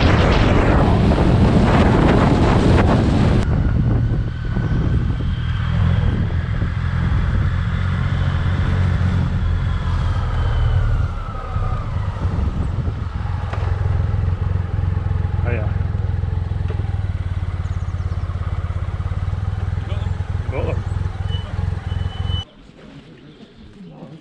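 Motorcycle engine heard from the riding bike itself, at first buried under heavy wind rush on the microphone, then running steadily at low road speed once the wind drops. The sound cuts off abruptly near the end.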